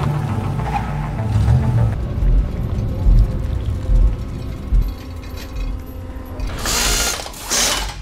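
TV drama soundtrack of eerie mechanical sound design: a dense grinding, ratcheting texture over low thuds about once a second, with two loud rushing noise bursts near the end, cutting off abruptly.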